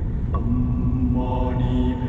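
Background music of long held notes, slow and chant-like, over a low rumble.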